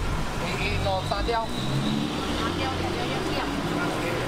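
Busy street ambience: nearby people talking over a steady low rumble of traffic.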